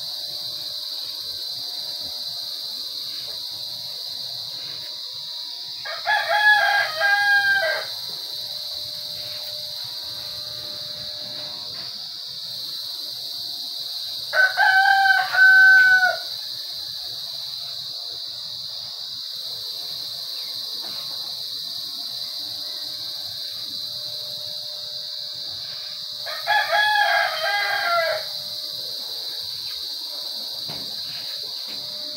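A rooster crowing three times: about a fifth of the way in, midway, and near the end, each crow about two seconds long. A steady high-pitched drone runs underneath.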